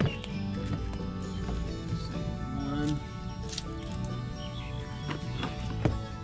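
Background music with steady held notes, over a few light knocks on a wooden boardwalk, the sharpest just before the end.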